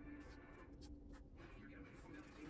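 Faint strokes of a soft pastel stick rubbing across textured paper, several short strokes in quick succession, with a steady low hum beneath.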